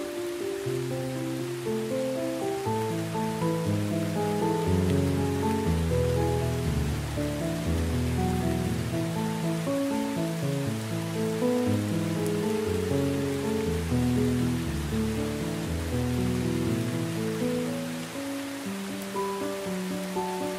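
Slow, soft instrumental music of held, overlapping notes over the steady hiss of heavy rain.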